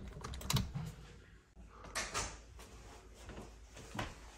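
Metal clicks of a door's lever handle and latch being worked: a quick cluster of sharp clicks about half a second in, a softer rasp around two seconds, and another click at the end.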